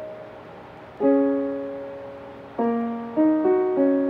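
Piano played slowly, each chord left to ring and die away: one struck about a second in, another about two and a half seconds in, then a few single notes in quick succession near the end.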